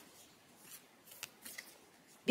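Near silence: faint room tone with a few soft, short clicks.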